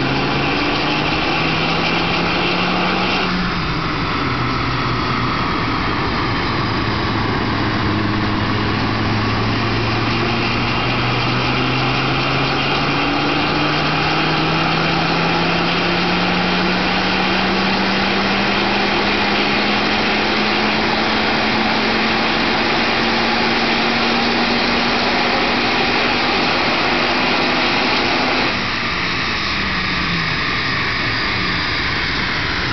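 Volvo 850 T5's turbocharged 2.3-litre five-cylinder engine, remapped to about 300 bhp, pulling under full load on a rolling-road dyno. The revs climb, drop sharply about three seconds in, then rise slowly and steadily for most of the run before falling away near the end as the throttle comes off.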